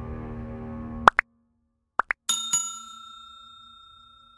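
Background music stops about a second in, followed by a subscribe-button animation sound effect: two pairs of quick rising pops, then a bell-like chime struck twice that rings out and slowly fades.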